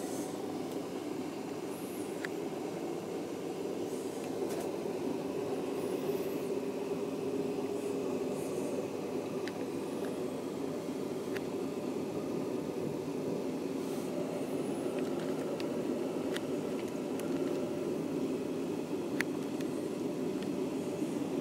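Steady rumble of a moving passenger train, heard from inside the carriage, with scattered light clicks and ticks.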